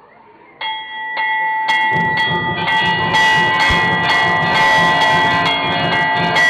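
Large hanging temple bell rung by hand with repeated strikes, about two a second, its steady ringing building up. From about two seconds in, further clanging and lower rhythmic sounds join it.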